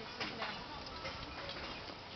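A few light clicks and ticks from a bow and arrow being handled as an archer nocks and readies a shot, over a steady outdoor background hiss.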